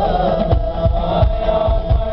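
Live choir of voices singing a selawat, a devotional song in praise of the Prophet, over a stage sound system, with a steady drum beat underneath.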